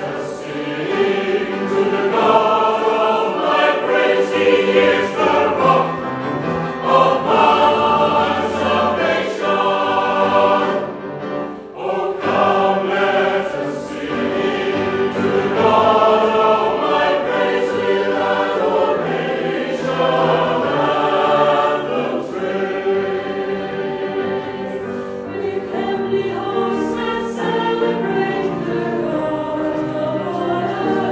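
Salvation Army songster brigade, a mixed choir of men and women, singing a hymn in several parts, with a short break between phrases about twelve seconds in.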